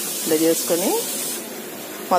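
Blue hand-pump pressure sprayer misting liquid onto plants: a steady hiss that cuts off about a second and a half in.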